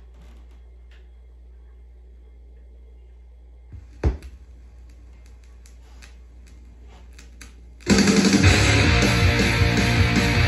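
Low hum with faint clicks, then a single thump about four seconds in like a stylus set down on a vinyl record, followed by a few seconds of surface crackle from the lead-in groove. Loud rock music with electric guitar starts suddenly about eight seconds in, played from the record.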